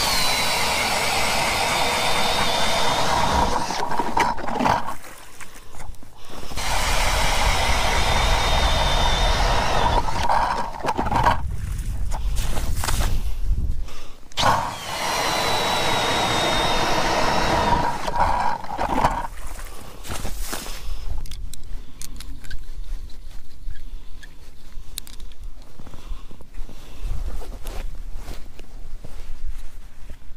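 Cordless drill spinning an ice auger through lake ice in three runs of a few seconds each, its motor whine dropping slightly in pitch as each run begins. After the third run come quieter scattered knocks.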